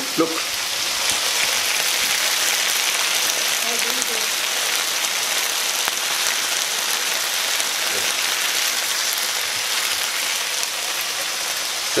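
Pieces of chicken breast frying in a pan, a steady sizzle while they brown.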